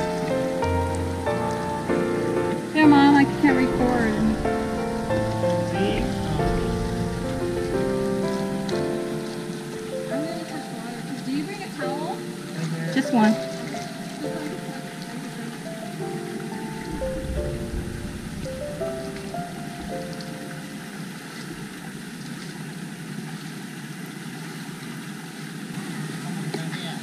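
Piano background music, a slow melody of held notes, over a steady rush of running creek water.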